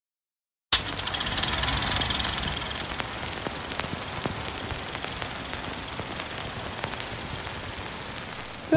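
Old film projector running: a rapid mechanical clatter over hiss, with scattered pops and clicks of worn film, starting suddenly just under a second in and easing off after about two seconds.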